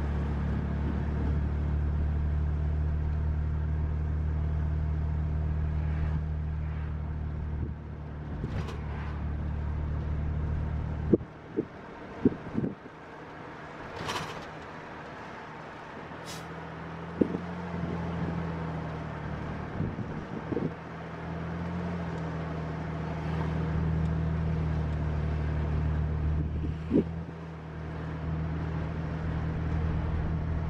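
Car interior noise while driving: a steady low engine and road drone that falls away for several seconds about eleven seconds in, then builds back up. A few short sharp clicks sound through the middle of the stretch.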